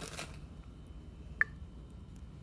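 Quiet background hiss with a single sharp click about one and a half seconds in, after the tail of a spoken word at the start.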